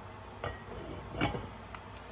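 Enamelled cast-iron Dutch oven lid being set and settled on the pot: a few short, light clinks, the first ringing briefly.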